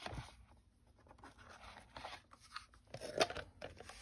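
Quiet handling of craft supplies on a cutting mat: faint scrapes and small plastic clicks as a clear plastic watercolour palette is picked up and moved, with a few sharper clicks about three seconds in.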